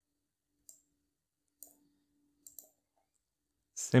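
Faint computer mouse clicks: two single clicks about a second apart, then two in quick succession.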